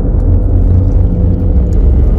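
Loud, steady, deep rumble with a faint held tone above it: a low drone sound effect laid into the video's soundtrack.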